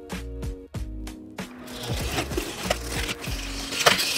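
Background music with a steady beat. From about halfway, a utility knife slits packing tape along a cardboard box seam, a scratchy hiss that grows louder near the end.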